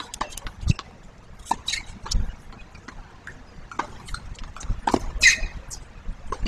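Scattered short knocks at irregular intervals: a tennis ball bounced on a hard court and footsteps on the court surface, with a brief higher scuff near the end.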